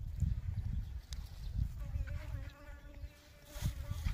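A flying insect buzzing close by as a steady drone for about a second and a half in the middle, over a low rumbling noise on the microphone.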